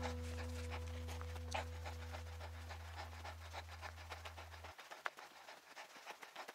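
The last guitar chord of the background music rings out and fades, dying away about three-quarters of the way through, over faint, quick crunching of hiking footsteps on a gravel trail.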